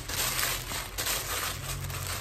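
Tissue paper rustling and crinkling in quick, irregular crackles as hands crumple and press it around a cardboard basket.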